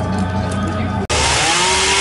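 Background music and voices, then after an abrupt cut about halfway through, a chainsaw revs up and runs at high speed cutting into a wood block, its pitch climbing and then holding steady.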